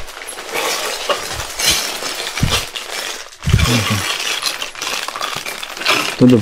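Clear plastic saree packets rustling and crinkling as they are lifted and handled, with small sharp crackles and clinks.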